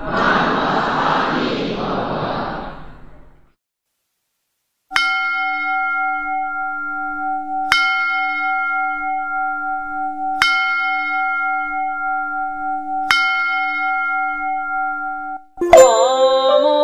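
A rushing noise fades away over the first three seconds. After a short break, a bell is struck four times, about every two and a half seconds, each stroke ringing on at a steady pitch.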